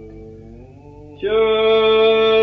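Byzantine chant in the plagal second mode by a male chanter: the voice sings softly and glides upward, then a little over a second in comes back loud on a long, steady held note.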